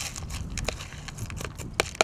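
Wet fishing pellets and crushed boilies being stirred with a metal scissor blade in a plastic bait tub: soft clicks and rattles, with a few sharper ticks near the end.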